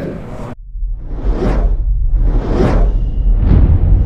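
Cinematic logo-sting sound effects: three swelling whooshes, about a second apart, over a deep steady rumble. They begin right after the room sound cuts off about half a second in.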